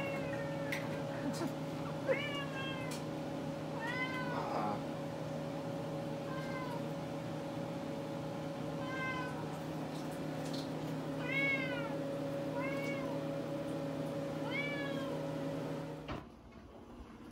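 Tabby cat meowing over and over, about eight short meows that each rise and fall in pitch, begging for food while a can of tuna is opened. A steady low hum runs underneath, and a sharp click comes about two seconds in.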